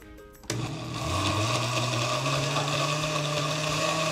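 Countertop blender switching on about half a second in, its motor rising in pitch for about a second and then running steadily as it blends a smoothie.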